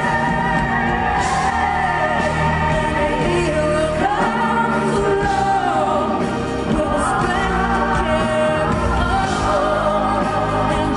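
A woman singing a slow pop ballad live into a microphone, holding long notes that glide up and down, over a live band with drums and bass guitar.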